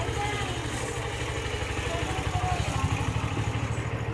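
A vehicle engine running steadily, with an even low pulse.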